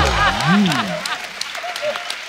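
Studio audience applauding, with the tail of a short pitched music cue in the first half-second.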